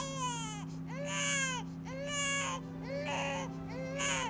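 Newborn baby crying: a string of short wailing cries, about one a second, each rising and falling in pitch.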